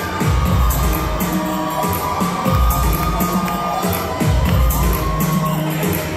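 Live pop music played loud over a PA system, with a heavy bass beat and sharp percussion, and an audience cheering over it.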